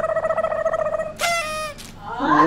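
A person's voice holding one high note with a fast flutter for about a second, then a short falling squeal.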